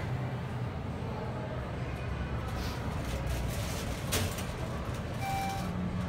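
Schindler glass traction elevator car riding up, a steady low hum of the car in motion, with a click about four seconds in. Near the end a short single chime tone sounds as the car reaches the next floor.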